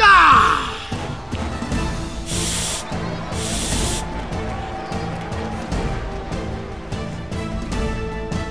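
Two short hisses of steam from a HAAN handheld steam cleaner's nozzle, one about two and a half seconds in and one about three and a half seconds in, over background music. A man shouts at the very start.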